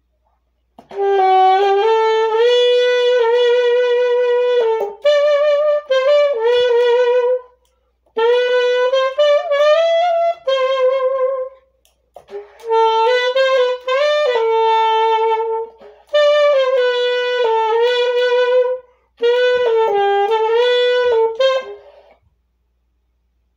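Unaccompanied saxophone playing a slow melody in phrases of a few seconds, with short breaks for breath between them and vibrato on the held notes.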